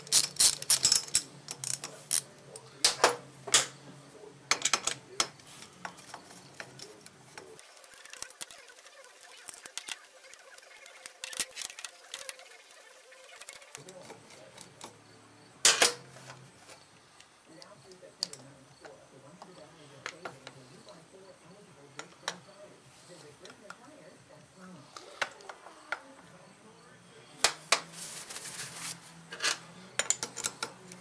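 Scattered metallic clicks and clinks of hand tools and engine parts as a McCulloch Mac 140 chainsaw crankcase is handled and reassembled, busiest at the start, with a sharp knock about sixteen seconds in and a cluster of clicks near the end.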